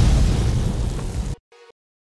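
Cartoon bomb-explosion sound effect marking time's up on a quiz countdown: a loud blast that dies down and cuts off suddenly about a second and a half in, followed by a short pitched blip.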